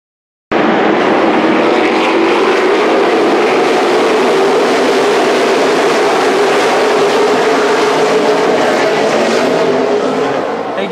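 A pack of NASCAR Camping World Truck Series race trucks, V8 engines, running at speed past the trackside. The loud, steady engine sound cuts in abruptly about half a second in.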